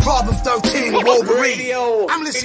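Hip hop music with a man rapping, opening on a deep bass hit.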